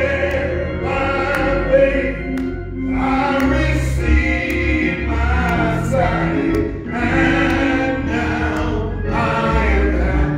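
Gospel singing: a man's voice on the microphone leading a song in phrases, with other voices joining, over keyboard accompaniment with a steady low bass line.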